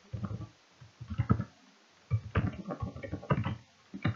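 Typing on a computer keyboard: rapid keystroke clicks in three short bursts, the longest in the second half.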